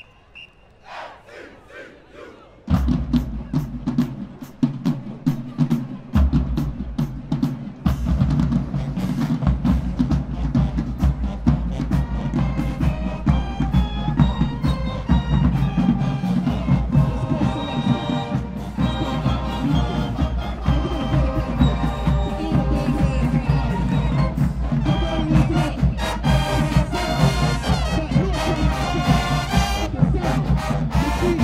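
HBCU marching band starting its field show: after a quiet opening, the drumline and bass drums come in sharply about three seconds in, and the horns join over the drums from around twelve seconds in.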